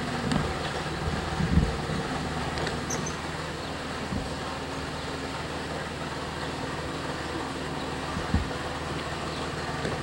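Steady background noise with a low hum, broken by a few dull thumps, the strongest about one and a half seconds in and again near the end.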